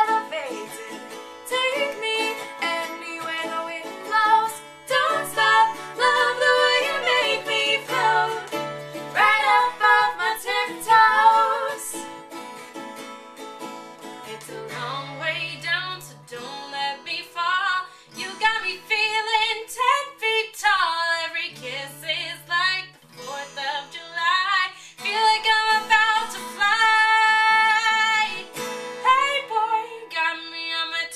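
Two women singing together, accompanied by an acoustic guitar and a ukulele.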